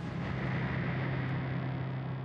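Closing hit of a TV news programme's title sting: a deep boom with a low steady drone under a wash of noise, held and starting to fade near the end.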